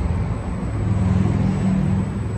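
Steady low mechanical rumble with a hum under it, the kind of background of road traffic or a large outdoor machine.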